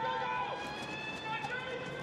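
Electronic race start signal: a steady held tone with several overtones, fading away over about two seconds.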